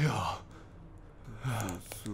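A man's breathy, voiced exhales, twice: a short one at the start and another near the end.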